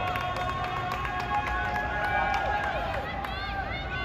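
Sideline players and spectators shouting and cheering during play, with long held yells through most of the stretch and several short rising-and-falling calls near the end.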